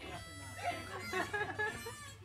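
Indistinct chatter of several people, with background music underneath.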